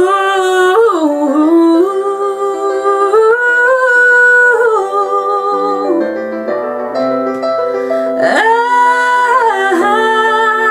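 A woman singing a wordless run on "oh" over a piano backing track, swooping up into long held, ornamented notes at the start and again about eight seconds in.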